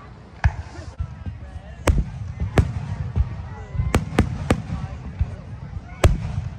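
Aerial firework shells bursting: several sharp bangs at irregular intervals, with a quick run of three about four seconds in.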